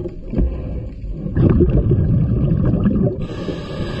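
Scuba diver breathing through a regulator underwater: exhaled bubbles gurgle and crackle for about two seconds, then a short hiss of inhalation comes near the end.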